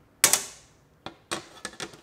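A sheet of clear glass snapping along its scored line as it is pushed up by hand: one sharp, loud snap about a quarter second in, with a short ring after. Then a few lighter clicks and taps of the glass pieces being handled and set down on the table.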